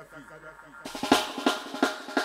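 The repeating echo of a spoken sound-system jingle fades out. About a second in, a roots-reggae track kicks in with drum hits about three a second.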